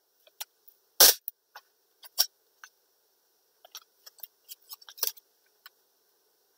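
Wide masking tape being handled and pressed over floral wire on a plastic cutting mat: scattered small clicks and crackles, with a sharper knock about a second in and another about two seconds in.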